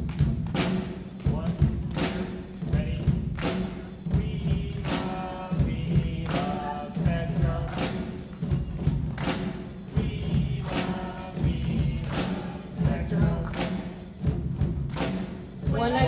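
Live drumming: hand drums and a drum kit beating a steady rhythm, with a group of voices singing along from about four seconds in.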